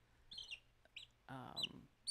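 A chick peeping: three or four short, high, downward-sliding peeps, faint.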